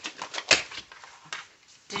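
Pages of a spiral-bound Plum Paper planner being flipped quickly: a rapid run of papery clicks and flaps, with one sharper slap about half a second in and a softer one a little after one second.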